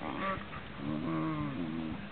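Italian greyhound 'talking': a short whiny vocalization, then about a second in a longer, low, wavering moan-like grumble.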